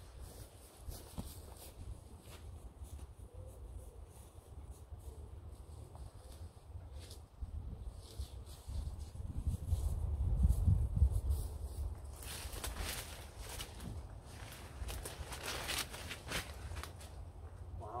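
Wind rumbling on the microphone, strongest around ten seconds in. Over the last few seconds come rustling and swishing as someone walks through tall grass and weeds.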